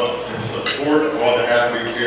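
Cutlery and dishes clinking at banquet tables, with two sharp clinks, one just under a second in and one near the end, over a man's voice through the hall's PA.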